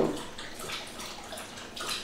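Faint, steady background noise: an even hiss with no distinct events.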